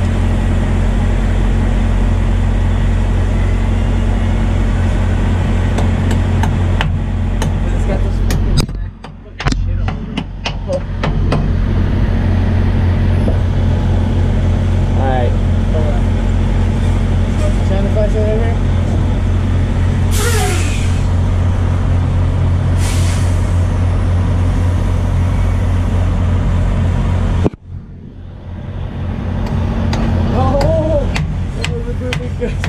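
A diesel truck engine idling steadily, with a run of sharp metal clicks and knocks from work under the truck about a third of the way in, and two short hisses of air later on. The engine hum cuts out abruptly twice, briefly.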